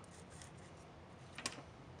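Quiet room tone with faint handling noise from hands moving insulated test wires, and one short, sharp click about one and a half seconds in.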